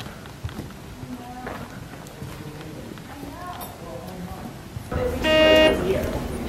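Faint background voices and room noise, then, about five seconds in, a loud, steady, horn-like tone that lasts well under a second.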